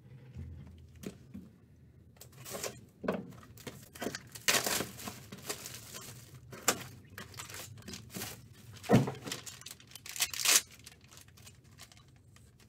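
Crinkling plastic wrapping and tearing as a trading-card box is opened and its foil card pack handled, in a run of irregular rustles and rips. A sharp knock comes about nine seconds in.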